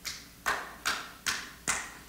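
Five evenly spaced hand claps, about two and a half a second, each with a short echo: a listener at the back clapping in agreement with the sermon.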